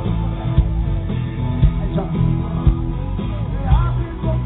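Live pop-rock band playing loudly, with drum hits, bass and guitar, and a singer's voice coming in near the end. The sound is dull and cut off in the highs, as recorded from the crowd on a small camera.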